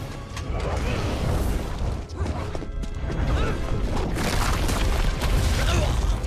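Film action soundtrack: music mixed with crashing and booming impacts over a deep, continuous rumble.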